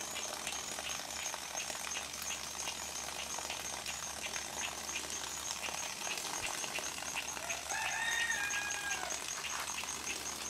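A rooster crows once, about three quarters of the way through. Underneath it runs a steady rushing noise with fine rapid clicking and a fast, regular high ticking.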